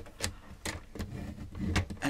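A paper trimmer and a thick chipboard sheet being handled: about four sharp clicks and taps, with a brief low rumble near the end, as the sheet is shifted and the trimmer's scoring blade is worked along its track.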